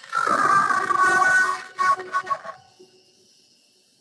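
Audio of a guided yoga nidra recording playing through a shared media player, with steady pitched tones that die away about two and a half seconds in, leaving near silence.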